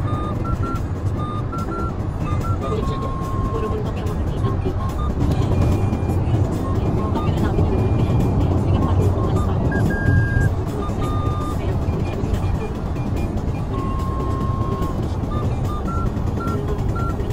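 Steady road and engine noise inside a car cruising on an expressway, a deep even rumble of tyres and drivetrain heard through the cabin. A faint melody of short notes plays over it at times.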